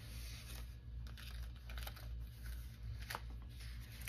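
Paper pages of a handmade junk journal being turned and pressed flat by hand: soft rustling with a few short clicks and taps.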